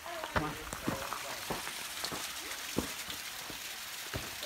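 Steady hiss of water running down a small rocky waterfall and creek, with a few sharp knocks of footsteps on stones.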